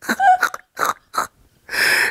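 A woman laughing: a few short, breathy bursts of laughter, then a longer wheezing gasp near the end.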